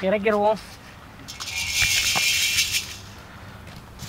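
Whole dry spices (black peppercorns, fennel and cumin seeds, dried red chillies) poured from a plate into an empty iron kadai. They scatter hissing and clicking onto the metal for about a second and a half, starting a little over a second in.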